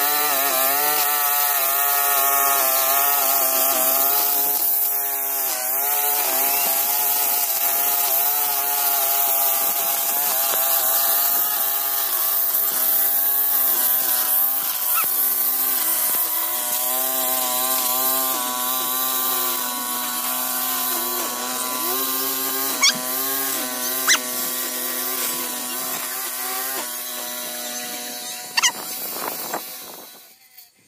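String trimmer (whipper snipper) running while cutting grass, its pitch wavering up and down as it works, with two sharp ticks a little past two-thirds of the way through.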